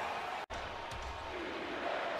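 Basketball game sound on an arena's hardwood court: a ball being dribbled, heard as a few faint bounces over a steady low background. The sound drops out sharply for a moment about half a second in.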